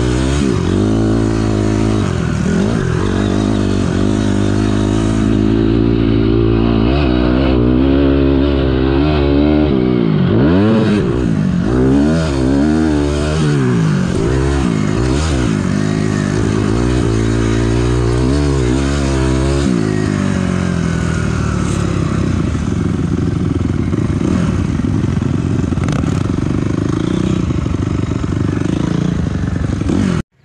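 A 2006 Honda CRF250R's single-cylinder four-stroke engine under way, revving up and falling back over and over as the throttle is worked. For about the last third it settles into a steadier note.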